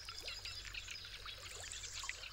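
Faint background of small birds chirping in quick, overlapping high notes, over a low steady hum.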